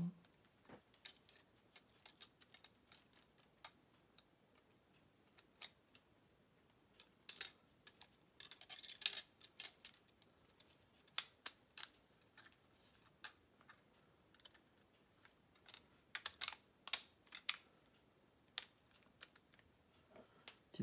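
Faint, scattered small clicks and scrapes of the plastic case, screen frame and circuit board of a Sharp PC-1251 pocket computer being handled and pressed together during reassembly, coming in little bunches around the middle and near the end.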